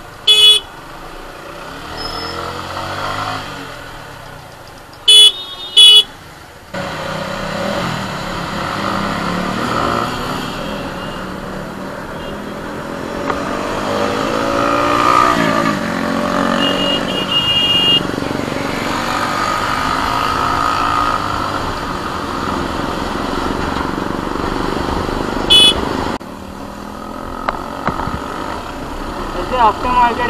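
Motorcycle ride through heavy traffic: engine and road noise that rise sharply as the bike pulls away about seven seconds in, with the engine revving up and down around the middle. Short vehicle horn toots cut through: one right at the start, two quick ones about five seconds in, and another near the end.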